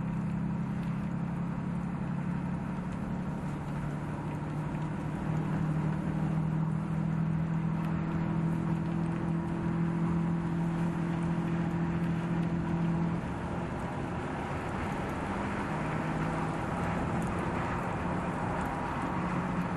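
Ram 2500 heavy-duty pickup truck driving at a steady speed, its engine holding an even drone over tyre and road noise. The engine note fades about 13 seconds in and comes back a few seconds later.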